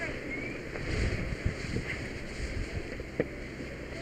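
Steady low rumbling noise picked up by a firefighter's helmet-camera microphone, with two sharp knocks, one about one and a half seconds in and one about three seconds in.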